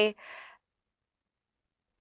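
A woman's short, soft intake of breath between spoken sentences, lasting about half a second, then dead silence for well over a second.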